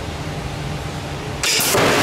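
Headform impactor test rig with a steady low machine hum, then firing about one and a half seconds in: a sudden, louder rush of noise lasting about a second as the headform is launched.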